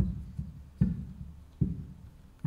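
Three low knocks at a steady beat, about 0.8 s apart, counting in a song.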